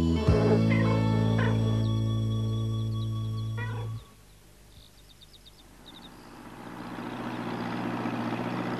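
A song's final held chord with a few short cat meows over it, cut off abruptly about four seconds in. After a quiet moment, a tractor engine grows steadily louder as it approaches.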